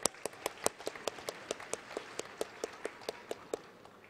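Audience applauding, with one or two nearby clappers standing out as sharp, evenly paced claps over the crowd's spread of many hands; the applause dies away near the end.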